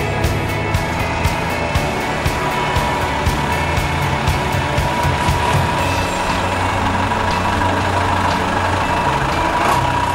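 Diesel engine of an old Mercedes LF8 fire engine running, under background music with a quick steady beat that fades after about six seconds.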